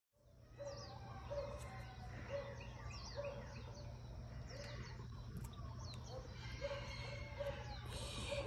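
Outdoor birdsong: several small birds chirping with quick falling notes, over a short low note that repeats regularly and a steady low hum.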